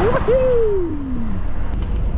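Volvo FH lorry cab on the move: a steady low engine and road rumble. Over it, a whoosh at the very start, then a single tone gliding down over about a second.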